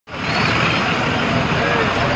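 Steady roadside traffic noise mixed with the voices of a crowd of people talking.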